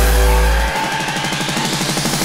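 Hardcore (gabber) electronic music. The deep bass drops out under a second in, leaving a fast stuttering synth pattern under a rising sweep, as in a breakdown building up.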